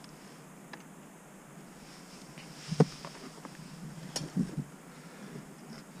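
A few knocks and clicks of fishing tackle being handled beside the angler, the loudest a single knock just under three seconds in and a sharp click a little after four seconds, over a faint steady background.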